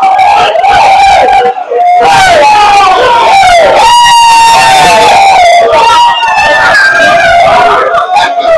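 A group of men shouting and chanting together in celebration, very loud, with long held notes from several voices at once, in a small crowded room.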